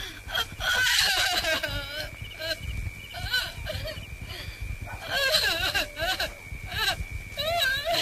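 A woman's voice wailing and crying in repeated quavering bursts, about one every second or two, the loudest about a second in and again a little past the middle. A steady high whine runs underneath.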